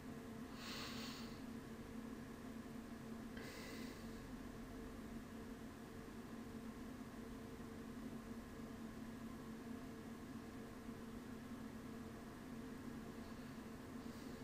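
Quiet room tone with a steady low hum, broken by two short breaths through the nose about a second in and again after three seconds.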